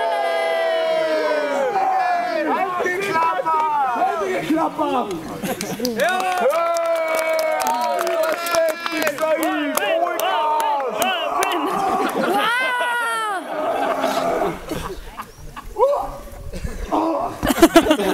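Loud, drawn-out wordless yelling from men in a mock sword-and-axe fight, the pitch held and sliding up and down, with crowd voices behind; a few sharp knocks near the end.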